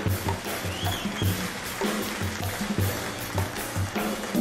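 Live jazz group playing: a drum kit keeps a steady pulse of low thumps with frequent cymbal and drum strikes over a bass line.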